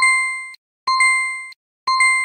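Three identical electronic chimes about a second apart, each a bright ding that fades within about half a second: a learning app's star-award sound, one ding for each star earned on the lesson-complete screen.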